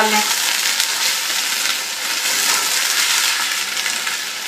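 Chicken pieces with yogurt and green chillies sizzling in hot oil in a pot while being fried and stirred, the yogurt's water cooking off. A steady crackling sizzle.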